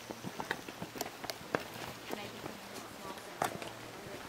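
Footsteps walking along a forest trail, an irregular series of steps and scuffs, with faint voices of other people in the background.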